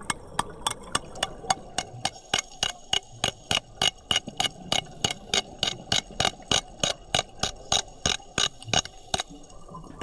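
A hand hammer striking a rock boulder underwater, sharp clicking taps about four a second, scoring the rock surface so epoxy can grip. The tapping stops near the end.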